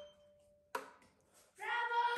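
The final note of a violin dying away as the bow lifts off, its string ringing on faintly, then a short click about three quarters of a second in and near silence. A voice begins near the end.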